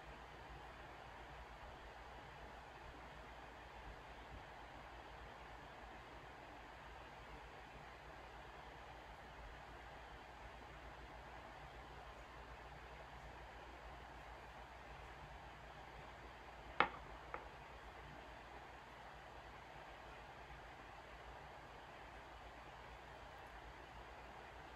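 Very quiet room tone: a faint steady hiss with a low hum. About two-thirds of the way through comes one sharp click, then a fainter one just after.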